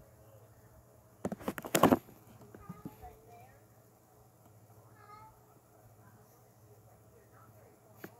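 A man puffing on a cigar: a quick run of lip smacks and pops about a second in, then quieter drawing. Faint short wavering calls come through in the background twice, around three and five seconds in.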